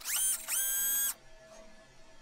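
Two synthesized electronic tones: a short rising chirp, then after a brief gap a held, bright tone that stops abruptly just over a second in.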